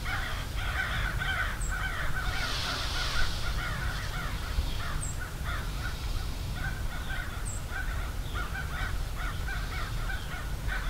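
Many crows cawing in a continuous overlapping chorus of short, repeated calls, over a steady low rumble.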